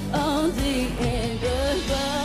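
Female pop vocal singing a wordless run of held, wavering notes with vibrato over an amplified backing track.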